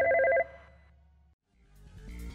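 A rapidly trilling ring, like a telephone's, cut off about half a second in, followed by a brief near-silent gap. Music starts to come back in near the end.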